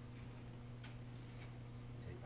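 Quiet room tone: a steady low hum with a few faint, irregular ticks.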